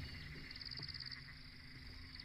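Faint frog call: a single high, rapid pulsed trill about half a second in, lasting about half a second, over a low steady hum.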